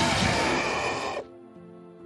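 A loud rushing noise lasting just over a second, which stops abruptly. Soft background music holding steady notes follows it.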